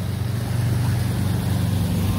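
A steady low mechanical hum, like a motor running, with no change in pitch.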